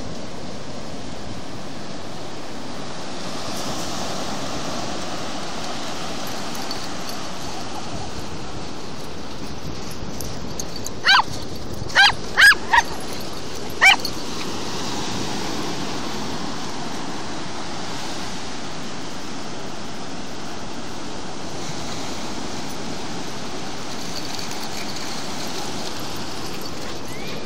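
Steady surf wash, with a dog giving five short, high-pitched yelps in quick succession about halfway through.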